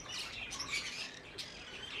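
Budgerigars chirping faintly, scattered short high chirps, with one light click about two-thirds of the way through.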